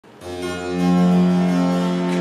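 Harpsichord and viola da gamba playing the continuo opening of a French baroque cantata, with steady held notes sounding from just after the start.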